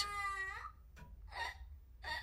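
A young child's wailing cry: one high held note that slides slightly down and fades away within the first second, followed by a faint short sob about a second and a half in.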